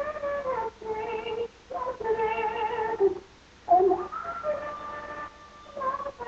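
A woman singing a gospel song solo, in long held notes that slide between pitches, phrase by phrase with short breaths between, and a brief pause a little past the middle.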